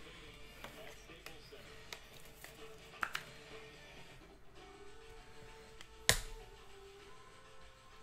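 Faint background music under small clicks and taps from trading cards and their plastic holders being handled, with one sharper knock about six seconds in.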